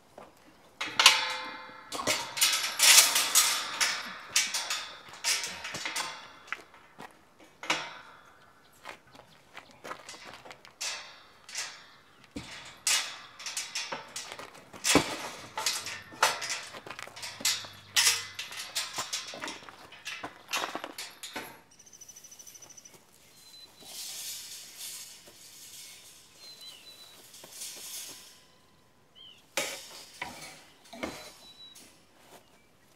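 Steel tube farm gate and welded-wire fencing rattling and clanking as the gate is lifted off its hinges and the wire fence is handled: irregular clinks and knocks, busiest in the first few seconds and thinning out after about twenty seconds.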